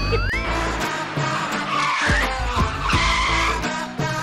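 Edited-in car sound effect over background music: a rising whine at the start, then two tyre skids about a second apart.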